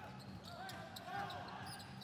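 Faint basketball court sound in an almost empty arena: a few sharp knocks of the ball and shoes on the hardwood, with distant players' shouts in the hall. A steady low hum runs underneath.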